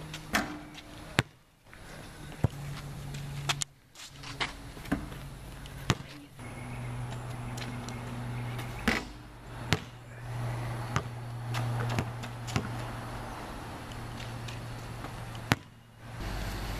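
A basketball bouncing and striking the backboard and rim, about ten sharp hits spaced irregularly, over a steady low hum.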